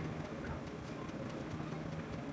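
Quiet room tone with a steady low hum and a few faint ticks.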